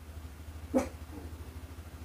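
A dog giving a single bark a little under a second in, one of the household dogs upset about something. A low steady hum runs underneath.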